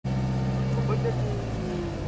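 A moving vehicle's engine running with a steady low hum, with voices talking over it.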